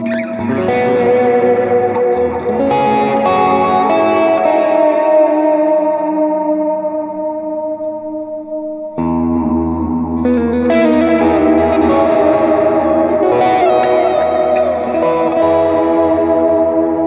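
Electric guitar with P90 pickups (Fena Guitars TL DLX90) played through an amplifier: sustained, ringing chords and melodic notes. A new, fuller chord is struck sharply about nine seconds in.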